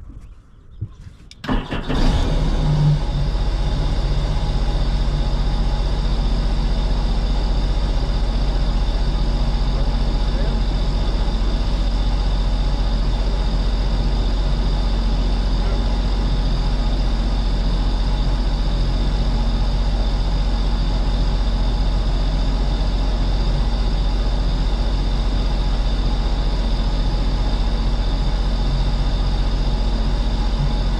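Supercharged Sea-Doo Speedster 150 jet boat engine starting about a second and a half in, then running steadily at low speed.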